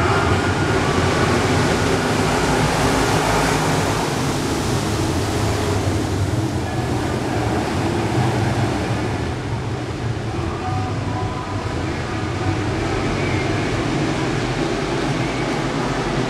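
A field of IMCA Modified dirt-track race cars racing in a pack, their V8 engines running at speed in one dense, continuous noise. The sound is loudest in the first few seconds and eases slightly after that.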